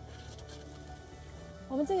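Background music with held tones over a faint hiss of water spraying from a perforated rain-simulating spray head onto porous asphalt; a woman starts speaking near the end.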